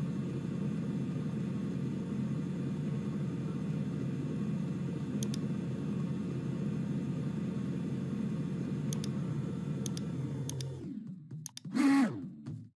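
Simulated conveyor belts in the Factory I.O. sorting station running with a steady low hum, with a few mouse clicks over it. The hum dies away about eleven seconds in, as the conveyors stop, and a brief louder sound follows just before the end.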